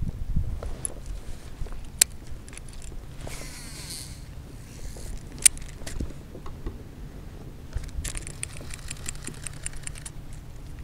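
Gear being handled aboard a fishing kayak: scattered sharp clicks and knocks, a brief rustle about three seconds in, and a quick run of light ticks in the last two seconds, over a steady low rumble.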